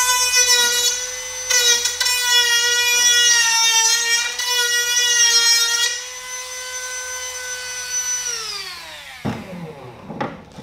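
Small cordless rotary tool with a sanding bit whining at high speed as it grinds a bevel onto the end of a plastic vent pipe, its pitch dipping under load. About eight seconds in it is switched off and its whine falls away as it spins down, then it is knocked down onto the bench near the end.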